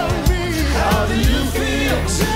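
Live hip-hop concert music: a deep bass line and drum beat with a sung melodic vocal line over it, played loud through the venue's sound system.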